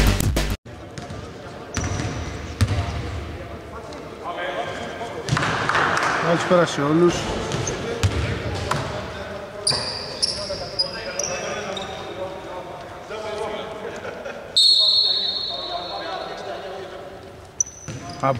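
Intro music cuts off suddenly about half a second in. It gives way to a basketball bouncing on a hardwood court in a large, echoing arena, with scattered players' voices and a few brief high squeaks.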